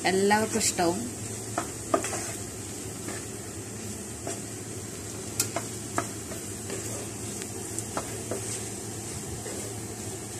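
A spatula stirring and scraping cauliflower and egg thoran in a non-stick pan over a steady low frying sizzle, with several sharp taps of the spatula against the pan.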